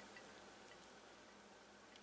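Near silence: room tone, with a couple of faint ticks early on.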